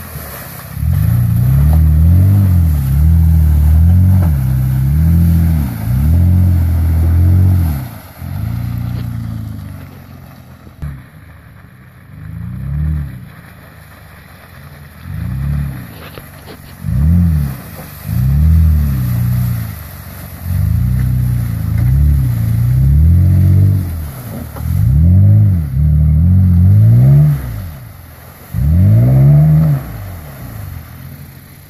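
Lifted Toyota Tacoma 4x4 pickup's engine revving hard again and again in short bursts, pitch climbing and dropping with each blip, as the truck spins its tyres through deep mud. It drops away for several seconds in the middle, then the revving returns just as loud.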